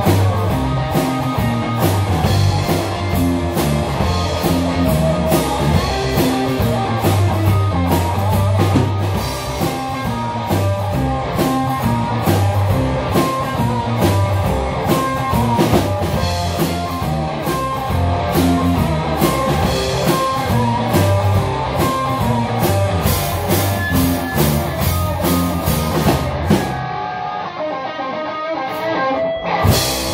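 Live blues-rock band playing loud in a small room: electric guitar, bass guitar and a drum kit with cymbals. Near the end the cymbals and the deep low end drop out for a couple of seconds, leaving a quieter passage, before the whole band crashes back in.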